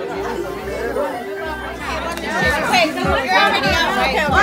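Party chatter: several people talking over one another, with music playing in the background. The voices grow louder about halfway through.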